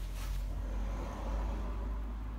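A steady low machine hum with a faint even hiss over it, swelling slightly in the middle.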